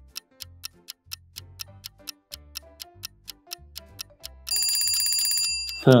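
Light children's background music with a quiz-countdown clock ticking several times a second. About four and a half seconds in, a loud electronic ringing alarm sounds for about a second as the countdown runs out.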